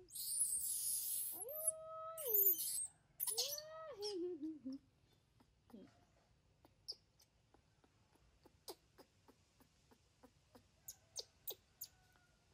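Newborn baby macaque screeching shrilly, then giving two wailing calls that hold their pitch and fall away. After about five seconds the calls stop and only sparse soft clicks are heard as it is fed from a spoon.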